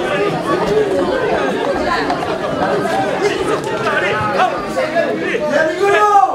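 Several men's voices talking over one another at once, a dense tangle of overlapping chatter in an argument.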